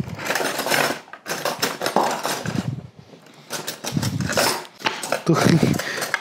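Spoon and cutlery clinking and scraping against a plate and small serving bowls as food is dished up, in irregular clusters, with a short laugh near the end.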